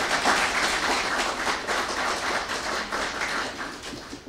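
An audience applauding, the clapping fading out near the end.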